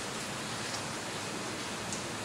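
Steady, even hiss of room tone picked up by the talk's microphone, with no distinct event.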